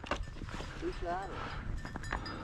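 Footsteps and rustling of tall dry grass, with small irregular clicks, and a faint distant voice calling about a second in.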